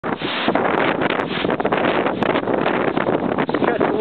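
Strong, gusty storm wind blowing through trees and buffeting the microphone in a loud, continuous rush.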